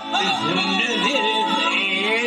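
A man singing live into a microphone, his voice bending up and down in ornamented runs over steady held accompaniment.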